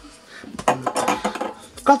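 Clinks and knocks of metal aerosol deodorant cans being picked up and handled on a kitchen worktop, with a short spoken word near the end.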